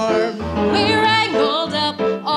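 A song: singers' voices with a wavering vibrato over backing music with a steady, repeating bass beat.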